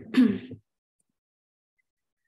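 A woman clears her throat once, followed by a short hesitant 'uh'.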